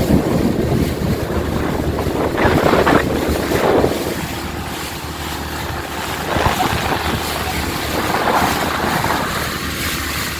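Wind rushing over the microphone and water rushing past the hull of a motorboat running fast across choppy water, a loud steady noise with a few louder surges of splashing.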